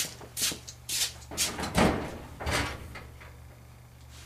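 Steel two-door storage cabinet being unlatched and its doors swung open: a series of sharp clicks and metallic knocks from the latch, handles and sheet-metal doors, dying away in the last second.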